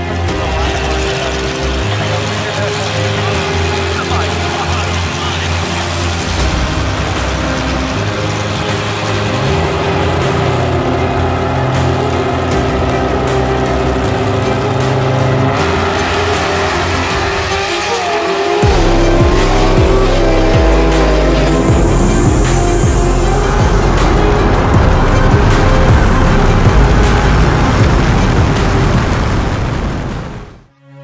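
Background music mixed with drag-car sounds: engines running and tyre noise, getting louder about two-thirds of the way in.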